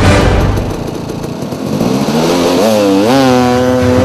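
Dirt bike engine revving: its pitch climbs in two steps over about a second, then holds high near the end. Backing music with a heavy beat fades out at the start.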